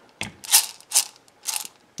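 Dried popcorn kernels rattling in a paper measuring cup as it is shaken to level them at a third of a cup: four short rattles with brief gaps between.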